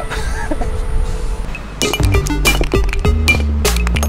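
A short laugh, then background music with a steady beat, drum hits and a deep stepped bass line, starting about two seconds in.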